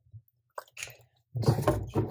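Handling noise from a plastic container being shaken over a blender: a brief rustle about half a second in, then a louder crunchy rustling shake lasting about half a second near the end.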